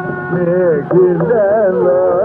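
Carnatic classical music: a melody with wavering, oscillating ornaments over a steady drone, punctuated by mridangam strokes. It has the dull, treble-less sound of an old recording.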